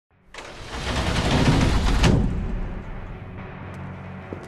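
A large metal sliding warehouse door rolling open: a loud noise swells over the first two seconds and ends in a sharp clank, then fades into a low steady hum.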